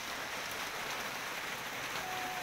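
Rain falling steadily, an even, unbroken hiss.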